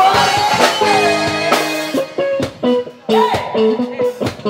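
Live rock band playing: drum kit, electric guitars and keyboard. A held note slides down in the first second, then the band plays short, clipped hits with brief gaps in the second half.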